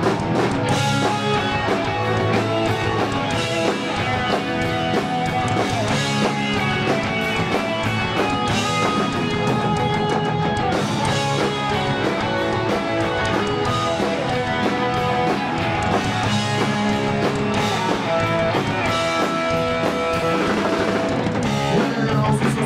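Live street-punk band playing an instrumental passage with no singing: distorted electric guitars, bass guitar and a drum kit at a steady, driving level.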